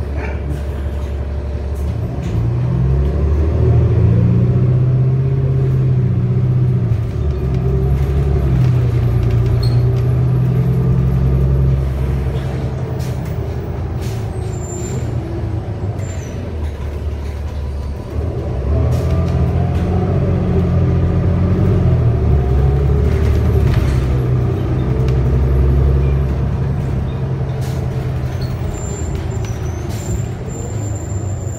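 Cummins L9 diesel engine and Allison B400R automatic transmission of a New Flyer XD35 bus, heard from inside the cabin while the bus accelerates twice. The engine note rises in steps as the gears change, eases off about twelve seconds in, then climbs again from about eighteen seconds before easing near the end.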